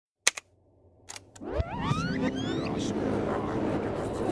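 Old audio equipment being switched on: a sharp switch click, a few fainter clicks, then a sound sweeping steeply up in pitch that settles into steady crackling static over a low hum.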